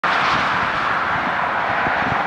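Steady outdoor rushing noise with no rise or fall, like distant traffic or an aircraft overhead.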